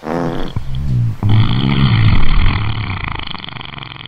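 A deep, drawn-out straining groan from a cartoon character, starting suddenly and wavering in pitch, with a hissing noise joining in after about a second; it peaks a little past the middle and fades toward the end.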